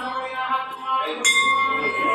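A brass bell hung on a stand, ringing, struck again about a second in with a clear ring that hangs on.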